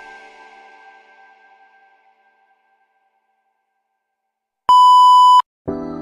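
Background music fades out to silence, then a loud steady electronic beep sounds for under a second, and new background music starts right after it.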